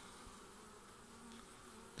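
Faint steady hum of honeybees on a comb frame held up out of an open hive.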